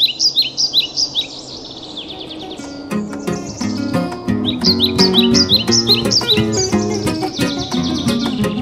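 A bird chirping in quick, high, repeated notes; about three seconds in, plucked guitar music begins under it and carries on, with a second run of chirps over the music around the middle.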